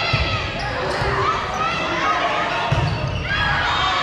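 Volleyball rally: several dull thuds of the ball being struck and hitting the hardwood floor, over a steady hubbub of crowd and player voices with shouts.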